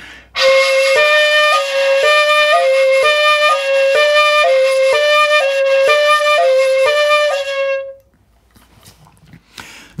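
Bamboo shakuhachi flute playing the koro koro practice pattern: a steady held tone that alternates evenly between the two 'ko' fingerings about twice a second. The two notes sit slightly apart in pitch, and there is a brief in-between sound at each change. It stops about eight seconds in.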